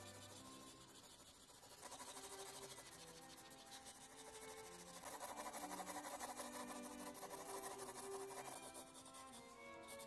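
A 2 mm mechanical pencil with 2B lead scratching quickly back and forth on sketch paper as shading is laid in, starting about two seconds in, under soft background music with held string notes.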